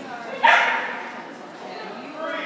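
A dog barks once, sharply, about half a second in, with the sound ringing on briefly in a large hall.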